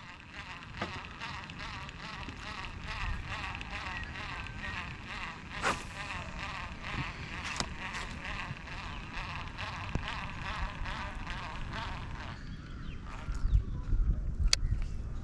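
Outdoor wildlife chorus: dense, high, wavering chirping that keeps on until it fades out about twelve seconds in. A few sharp knocks sound over it, the clearest about six seconds in.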